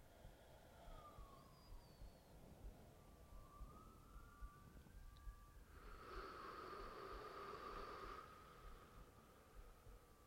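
A faint, distant siren wailing, its pitch sliding slowly down and up, swelling a little louder for a couple of seconds past the middle.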